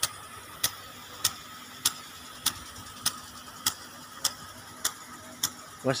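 Impact sprinkler ticking in an even rhythm, one sharp tick about every 0.6 seconds, over a steady background hum.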